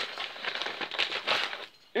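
Padded paper mailer rustling and crinkling as a DVD case is slid out of it, in an irregular run of crackles that stops shortly before the end.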